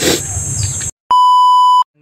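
Outdoor ambience with a steady, high-pitched insect drone cuts off abruptly about a second in. After a brief silence comes a loud, steady electronic beep tone lasting under a second, which is the loudest sound here.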